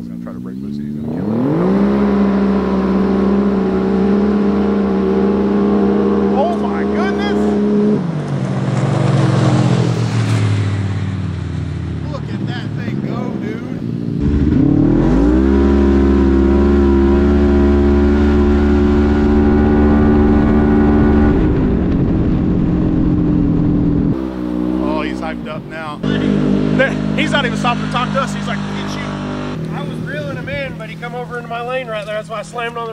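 Polaris RZR RS1's twin-cylinder engine at full throttle on a drag run: the revs sweep up quickly and then hold steady and high as the belt drive pulls, then fall away. This happens twice, with voices near the end.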